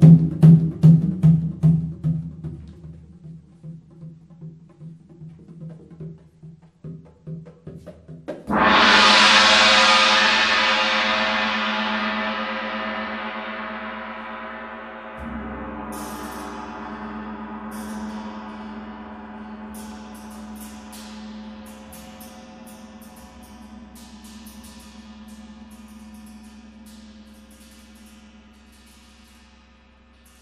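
Solo percussion: drums played with the hands in a quick repeated figure that fades away, then a large gong struck loudly about eight seconds in, ringing with a long shimmering decay. A second, lower gong stroke joins about halfway through, and light high taps sound over the fading ring.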